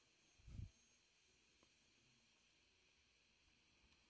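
Near silence: a faint steady background hiss, with one brief soft low-pitched puff about half a second in.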